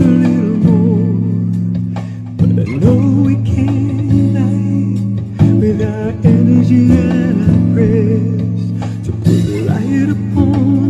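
Guitar playing an instrumental passage of a song, with sustained low notes under a wavering lead melody that bends in pitch.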